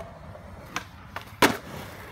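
Skateboard wheels rolling on concrete with a steady low rumble, then a couple of light clacks and a loud slap about one and a half seconds in as the board lands after a drop down a set of stairs.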